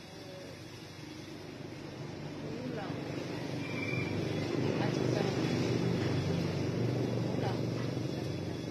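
A motor vehicle passing close by: engine and road noise that build over several seconds, loudest in the second half, then ease off a little.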